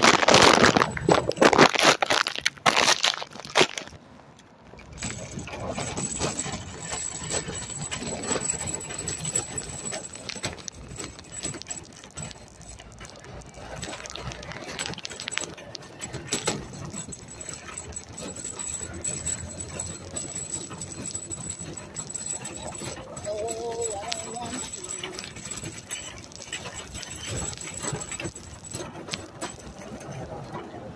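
Shopping cart rolling along a city sidewalk, its wheels and wire basket rattling steadily, under general street noise. Loud knocks and handling noise on the phone microphone in the first few seconds.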